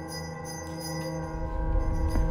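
Background music of sustained, ringing chime-like tones, with a low rumble swelling up underneath from about halfway through.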